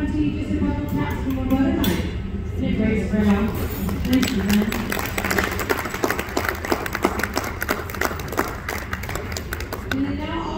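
Audience applauding: a dense patter of hand claps starting about four seconds in and lasting almost to the end, after a few seconds of voices.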